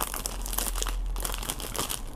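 Clear plastic packaging bag crinkling steadily as it is handled and opened by hand.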